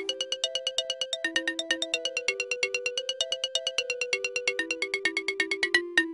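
Outro music: a light electronic tune of quick, evenly spaced short notes, about eight a second, over a simple melody.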